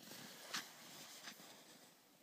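Near silence outdoors, broken by two faint short crunches, footsteps on snowy tundra about half a second and a second and a quarter in.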